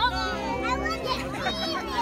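A crowd of children and adults singing together, many voices overlapping with held notes.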